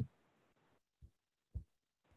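Near silence, broken by two faint low thumps about a second in, half a second apart.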